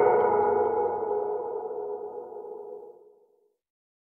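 The final held synthesizer chord of an electronic dance-pop track ringing out, fading away to nothing over about three seconds.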